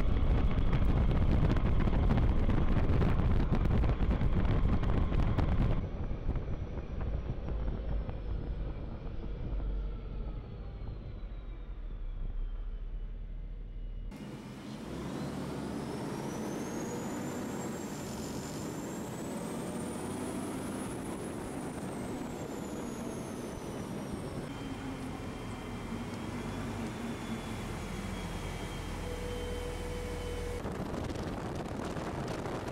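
Cadillac Gage V-100 armoured car driving, its engine and road noise heard with wind on the microphone, loudest for the first several seconds. Later the running is quieter and steadier, with a faint high whine that rises and then falls.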